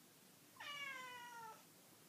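A Balinese cat gives a single meow about a second long, its pitch sliding slowly down.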